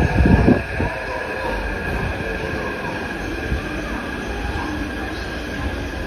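Taipei Metro C371 electric multiple unit pulling into an underground station: a brief loud rush in the first second as the front of the train comes past, then the steady rumble of the cars rolling alongside the platform with steady high squealing tones from the wheels and brakes as it slows.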